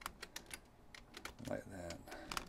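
Computer keyboard keys clicking in a quick, irregular run of keystrokes while code is typed and pasted into an editor.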